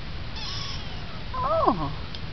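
Munchkin kitten meowing once in the second half, a short high cry that rises and then drops sharply in pitch.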